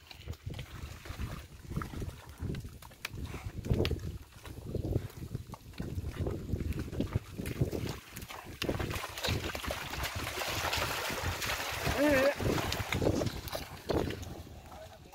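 A two-buffalo wooden cart moving along a wet mud track: the buffaloes' hooves and the cart's wheels squelching and splashing in mud, in uneven thuds. About twelve seconds in, a brief wavering voice call.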